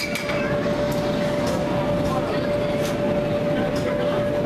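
Air hockey table's blower running with a steady hum while the plastic puck clacks sharply against the mallets and rails several times, over background chatter.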